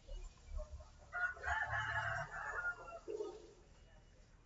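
A rooster crowing once, faint, one call of about two seconds beginning about a second in and dropping lower at its end. A couple of low thuds come just before it.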